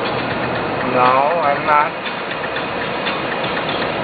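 Steady road and engine noise heard from inside a moving car on a highway, with a short burst of a person's voice about a second in.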